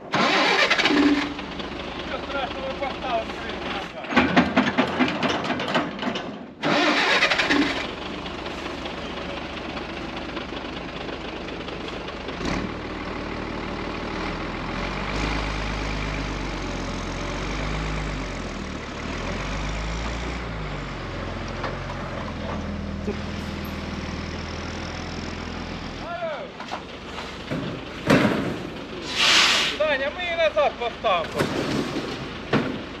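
A heavy truck's diesel engine starts a little under halfway through and runs with its speed stepping up and down, then stops a few seconds before the end.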